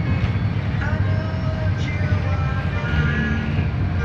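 Steady low rumble of a moving road vehicle heard from inside it, with music playing over it.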